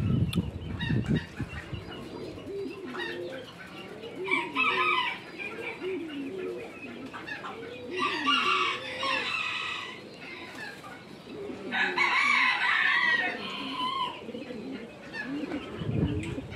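Domestic geese honking in loud bursts about four, eight and twelve seconds in, with softer, repeated low calls in between. A low rumble sounds in the first second.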